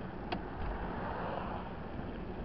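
A motorcycle riding at road speed, heard from a bike-mounted camera: wind rushing over the microphone with the engine running underneath. There is one short, sharp click about a third of a second in.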